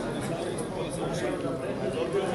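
Men's voices talking and calling out, with background chatter.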